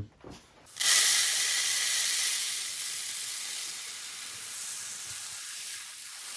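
Silica gel beads pouring out of a tilted plastic tub into another plastic tub: a steady rushing hiss that starts suddenly about a second in and slowly fades.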